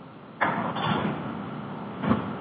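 Faint hiss on a telephone line, then about half a second in a sudden burst of rough, rushing noise on the line that carries on and eases slowly.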